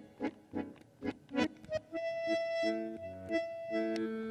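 Solo bandoneón playing short, detached chords, then from about two seconds in a held high note over changing lower chords.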